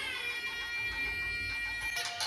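Nadhaswaram music: the reed pipe slides down into a long, steady held note.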